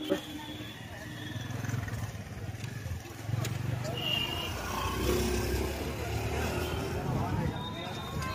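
Night street ambience: the low, steady rumble of passing motorbikes and e-rickshaws, growing louder midway, with scattered voices of people walking by and a short high beep about halfway through.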